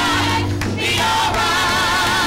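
Gospel choir singing, several voices holding notes with vibrato over steady low sustained notes.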